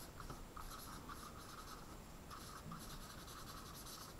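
Pen writing a line of words on a whiteboard: faint, short scratching strokes in quick succession.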